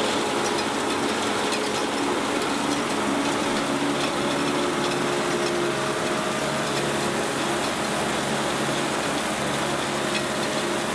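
Stone Slinger conveyor truck at work: its engine and hydraulic drive running steadily while the conveyor belt carries gravel off the hopper and slings it.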